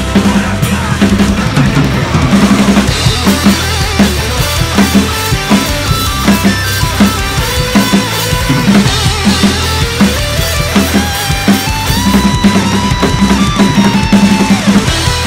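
Acoustic drum kit with Zildjian cymbals played hard and fast, with a rapid even rhythm of snare, bass drum and cymbal hits, over a recorded metalcore track whose guitar melody comes in more plainly in the second half.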